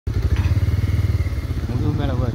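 A motor vehicle engine idling close by, a steady low, fast putter.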